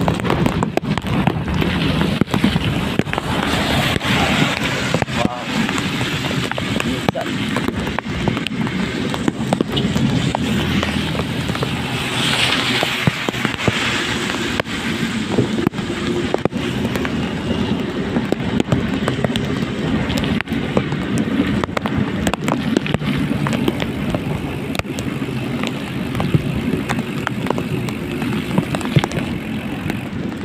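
Wind buffeting and rain striking the microphone of a camera moving along a wet road, with many small crackling clicks over a steady low rumble.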